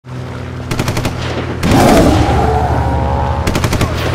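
Neon-sign sound effect: a steady electrical hum with runs of rapid crackling clicks as the tube flickers on. A louder surge of buzzing crackle comes about one and a half seconds in.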